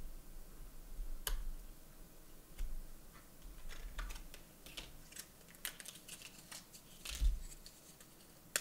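Small, irregular clicks and taps of laptop RAM sticks being handled: the old memory module is released from its spring-clip slot and lifted out, and a new one is fitted into the slot. A sharp click about a second in and a heavier knock a little after seven seconds stand out.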